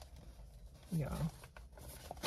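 Mostly quiet, with one short spoken "yeah" about a second in, a few faint clicks and rustles from hands handling things, and a faint low hum.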